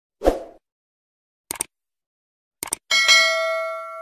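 Subscribe-button animation sound effects: a short low thump, then two pairs of quick mouse-like clicks, then a bell-like notification ding about three seconds in that rings on and slowly fades.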